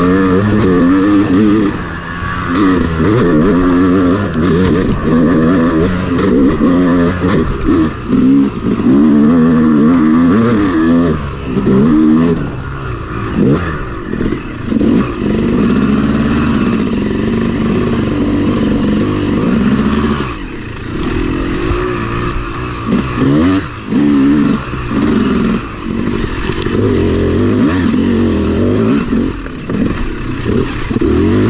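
Yamaha YZ250 two-stroke dirt bike engine under way, its revs rising and falling over and over as the throttle is worked, with brief drops off the throttle, heard close up from the rider's helmet camera.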